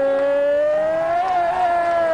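A person singing one long held note, loud and steady, that swells up a little in pitch midway and then slowly sags.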